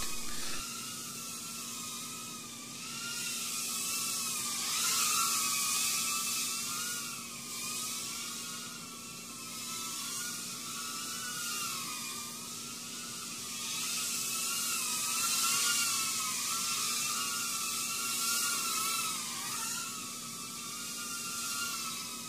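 Brushed-motor tiny whoop quadcopter in flight: a high whine from its motors and propellers, its pitch wavering up and down as the throttle changes, over a steady hiss.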